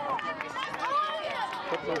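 Several high-pitched children's voices shouting and calling out over one another, with a shout of "nie, nie" near the end.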